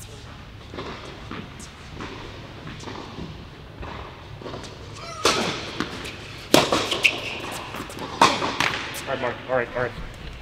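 Tennis ball struck hard by rackets in an indoor tennis hall, each hit echoing off the walls: a few loud strikes a second or so apart in the second half, after a quieter stretch.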